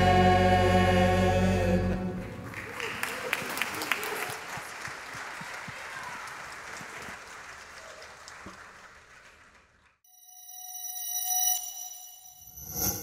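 A choir and orchestra hold the final chord of a worship song, which ends about two seconds in. Applause from the congregation follows and fades away. Near the end, a chiming sound effect swells up.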